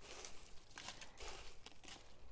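Faint rustling and crinkling of dampened leaves being handled in a bucket, with a few small clicks.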